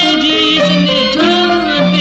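A classic Burmese song playing from a cassette album: a melody with vibrato over instrumental accompaniment.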